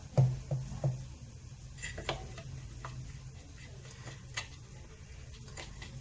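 Faint kitchen handling sounds as a small aluminium mould and kataifi pastry shreds are handled on a silicone mat: a few light, scattered clicks and taps, the sharpest about four and a half seconds in.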